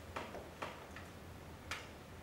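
Laptop keys or trackpad being clicked, about four short sharp clicks at uneven intervals, picked up faintly by the lectern microphone over a low steady hum.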